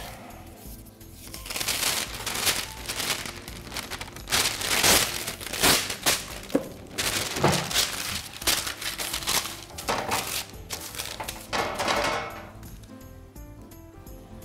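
Sheet of baking parchment paper crinkling and rustling in irregular bursts as it is pressed and folded into a metal baking tray. Soft background music runs underneath, and the rustling dies away near the end.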